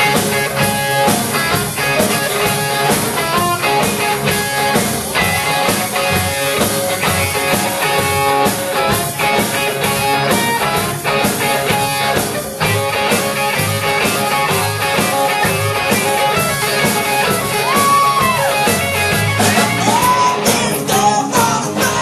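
Live rock band playing loud, with electric guitars and drums; a few bent, gliding notes come through near the end.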